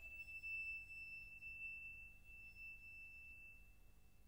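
A single high, thin ringing note from the orchestra, set off just before and held as it slowly fades away over about three and a half seconds in an otherwise quiet pause in the music.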